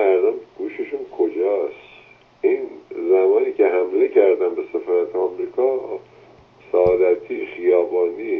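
Speech only: a caller's voice over a telephone line, sounding thin, in short phrases with brief pauses.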